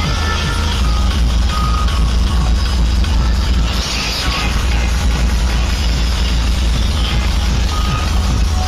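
Loud dance music blasting from a large truck-mounted DJ sound system, dominated by deep bass and a rapid kick-drum beat of about three strokes a second.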